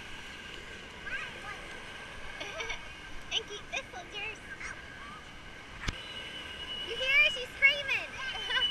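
Busy water-park ambience: distant children's voices and calls scattered over a steady wash of background noise, with one sharp click about six seconds in.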